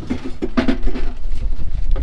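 A Magma stainless steel boat grill knocking and scraping in irregular clatters as it is pulled out of a fibreglass storage compartment, over a steady low rumble.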